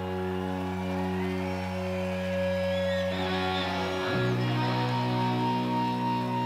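A live rock band's electric guitars holding sustained, droning chords with no drumbeat, changing to a new chord about four seconds in.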